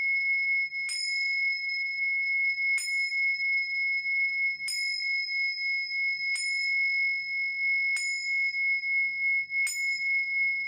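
A pair of tingsha cymbals on a cord struck together six times, about every two seconds. Each clash renews a long, clear ring of two pitches that wavers in loudness as it sustains.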